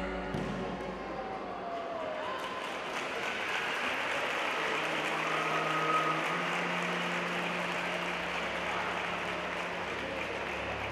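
A thump on the mat shortly after the start as a partner is thrown down, then the echoing murmur of an audience in a sports hall, swelling a little from about three seconds in.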